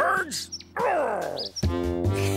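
A cartoon character's voice over background music: a short exclamation, then a falling vocal sound. About a second and a half in, a louder music cue comes in.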